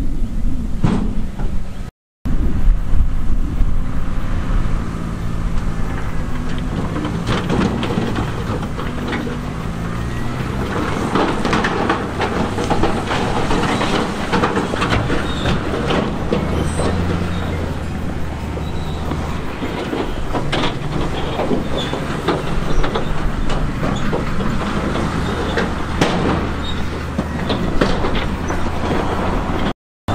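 Diesel engines of a Komatsu D58E crawler bulldozer and a dump truck running, with clattering and rumbling of rock as the truck tips its load onto the pile. The sound cuts out briefly twice, near the start and just before the end.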